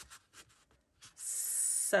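Paper rubbing against paper: a sheet being slid and pressed into a cardstock envelope pocket, a few faint ticks and then a steady scuffing hiss for most of a second near the end.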